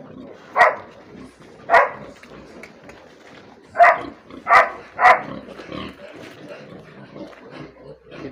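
An animal giving five short, sharp calls. Two come singly in the first two seconds, then three close together around four to five seconds in.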